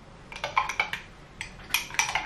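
Metal teaspoon stirring instant coffee and hot water in a drinking glass, clinking against the glass a few times at uneven intervals.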